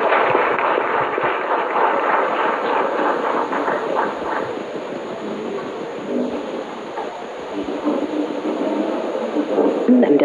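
An audience applauding, loudest at first and gradually dying down, with voices talking under it toward the end.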